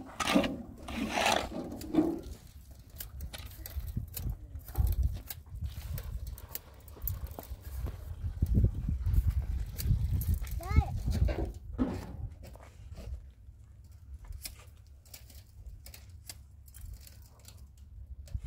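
Shovel scraping and knocking through a heap of wet cement and gravel mix, repeatedly. People's voices come in over it at the start and again about eleven seconds in.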